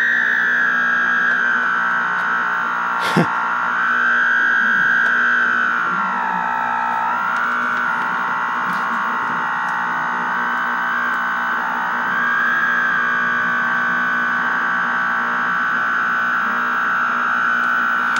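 A steady, distorted electronic tone with overtones from the TV's speaker while the pattern generator feeds the set; its pitch wanders slowly up and down. A single click about three seconds in.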